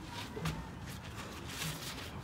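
Faint shuffling and rustling of feet and bodies on a plastic tarp, with a single sharp click about half a second in.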